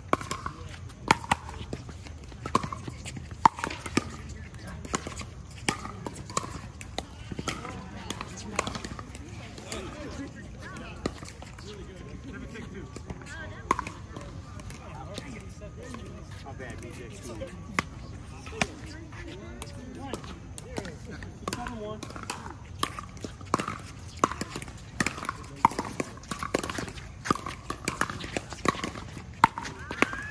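Pickleball paddles hitting a hollow plastic ball, sharp pocks coming quickly during rallies, with hits from neighbouring courts mixed in. The hits thin out in the middle, between points, and come thick again near the end.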